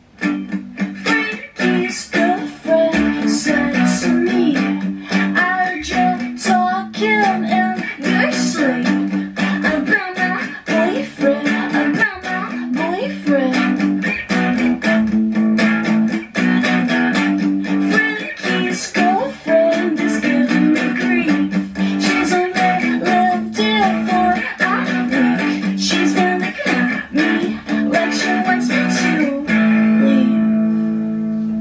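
Electric guitar strumming chords in a steady, driving rhythm. It comes in abruptly, with the song's instrumental opening.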